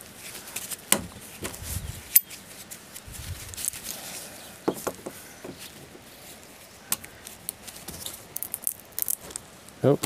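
Small metallic clicks and scrapes of pliers gripping and twisting a seized, rounded-out screw in a tailgate hinge, with one sharp click about two seconds in and a quick run of ticks near the end.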